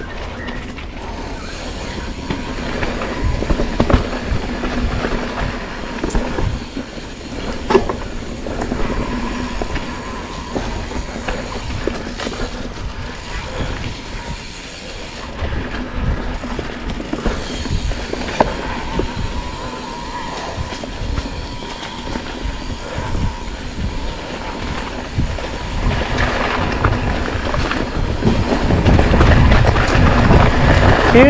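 Mountain bike ridden over a rough dirt trail: continuous rattling and knocking of the bike over bumps with tyre noise on the ground, and a faint whine that comes and goes.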